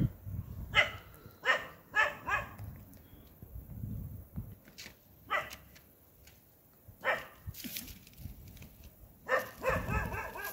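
A dog barking repeatedly in short bouts: a quick run of barks early on, single barks in the middle, and another run near the end.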